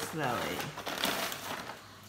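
Plastic mailer bag crinkling and rustling as clothes are pulled out of it.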